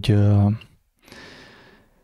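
A man's voice draws out the end of a word for about half a second, then after a brief pause he takes an audible breath in, lasting most of a second.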